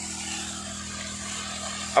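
An engine running steadily: a low, even hum with a faint hiss over it.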